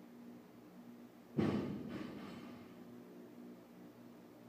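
A 45-pound barbell loaded with 35-pound plates is dropped from overhead onto a rubber gym floor. It lands with one heavy thud about a second and a half in and bounces once, more softly, half a second later, and the clang dies away.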